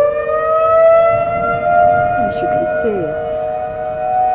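Outdoor tornado warning sirens sounding: one siren winds up, its pitch rising for about the first second and then holding steady, over a second steady, lower siren tone.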